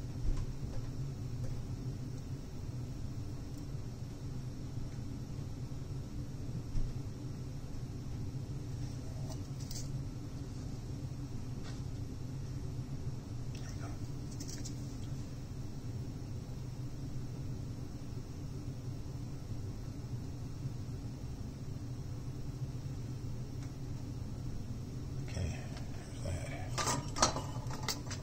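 Steady low hum with a few light clicks and taps from small metal tools such as tweezers being handled on a workbench, with a quick run of clicks near the end.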